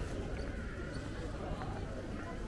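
Footsteps of someone walking on paving stones, with faint voices of passers-by in the street around.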